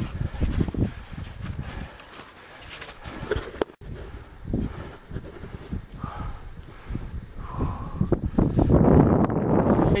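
Climbers' boots crunching through snow in a steady walking rhythm, with a louder rushing noise near the end.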